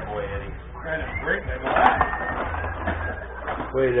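Benej rod hockey table in play: the rods and figures rattling and clicking as the players work them, with one sharp click about two seconds in, under murmured talk.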